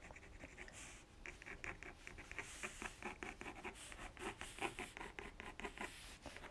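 Water-soluble coloured pencil (Inktense) scratching on watercolour paper in quick short shading strokes, several a second, faint and starting to come thick about a second in.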